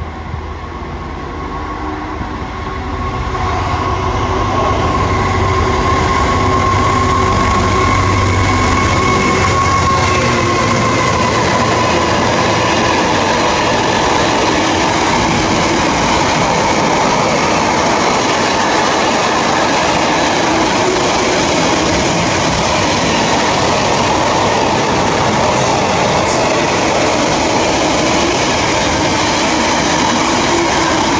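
Intermodal freight train of container and tank-container wagons passing at speed. It grows loud over the first few seconds, then the wagons give a long, steady run of wheel-on-rail noise. A high whine runs through it and dips slightly in pitch about ten seconds in.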